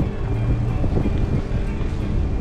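Low wind rumble on the microphone as the bicycle rolls along, with music playing under it.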